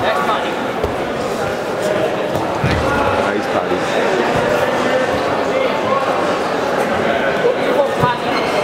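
Indistinct voices of spectators and coaches echoing in a large sports hall, with a few dull thuds of grapplers' bodies hitting the mats, the heaviest about three seconds in as one is taken down.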